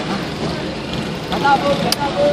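Steady traffic and engine noise in a busy street, with faint voices in the background and a sharp click near the end.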